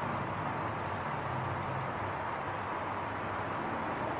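Outdoor background ambience: a steady hiss with two faint short high chirps about a second and a half apart, from a small bird or insect.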